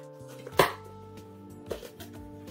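Cardboard mailer box being opened by hand: a sharp snap of cardboard about half a second in and a softer one near the end, over quiet background music.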